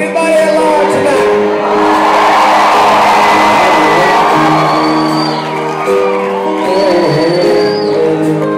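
Live country band in a large hall holding long sustained chords, with the audience cheering and whooping over it, loudest in the middle, and a couple of long high whistles.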